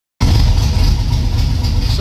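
1996 Camaro Z28's LT1 5.7-litre V8 idling steadily with a low, even pulse, warmed up, during a check for overheating.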